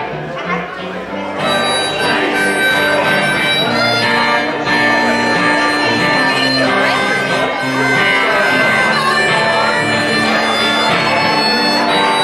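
Harmonica in a neck rack playing an instrumental break over strummed acoustic guitar, the harmonica coming in about a second and a half in.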